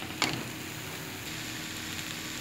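Egg and sausage mixture frying in a pan with a steady sizzle, and one sharp tap of a perforated metal spatula against the pan about a quarter second in.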